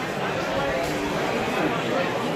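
Crowd chatter: many voices talking over one another at a steady level, with no single voice standing out.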